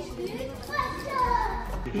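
Indistinct background voices, a child's among them, with one voice gliding down in pitch about a second in.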